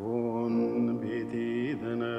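A low male voice chanting one long held note that starts abruptly and stays steady, with a brief dip in pitch near the end.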